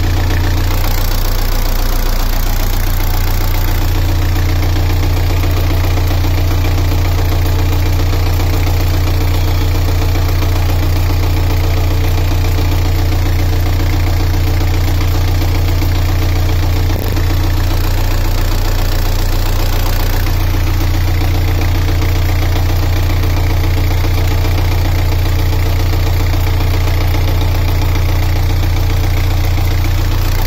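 Narrowboat's inboard diesel engine idling steadily, heard up close in the engine bay, a loud, even low drone with a brief dip about halfway through.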